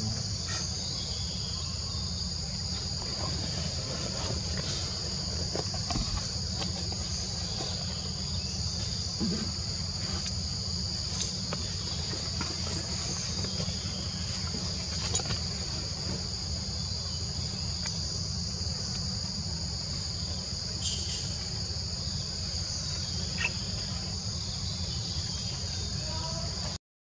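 Steady chorus of forest insects, a high-pitched drone holding two even tones without a break, over a low steady rumble.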